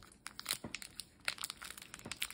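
Thin plastic team bag crinkling and crackling as fingers peel its tape and pull it open around a stack of cards, in scattered small crackles.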